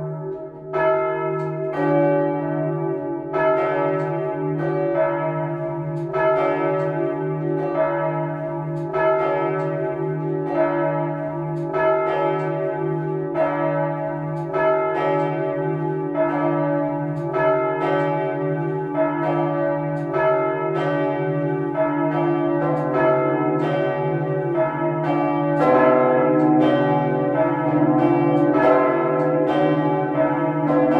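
Three swinging church bells ringing together in a full peal, their strokes falling in an irregular, overlapping pattern over a long ringing hum. The mix of notes shifts about two-thirds of the way through.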